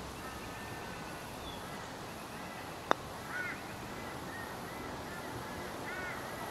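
A putter striking a golf ball once on a putt: a single short, sharp click about three seconds in.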